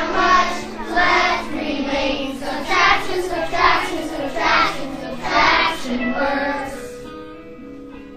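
A class of third-grade children singing together in unison over a musical accompaniment. The singing stops about seven seconds in, leaving the accompaniment fading.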